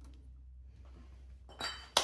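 A removed aluminium scooter cylinder barrel being put down: a short scrape about a second and a half in, then a sharp metallic clink near the end.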